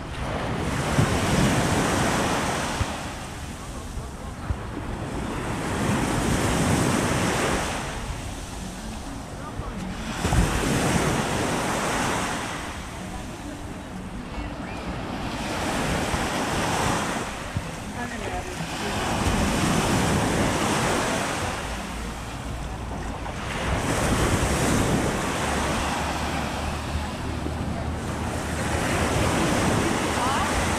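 Small sea waves breaking and washing up onto a sandy shore, the rush swelling and fading about every four to five seconds.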